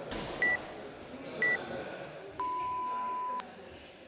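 Workout countdown timer beeping: two short high beeps a second apart, then one long lower beep lasting about a second that marks the start of the workout. Gym room noise runs underneath.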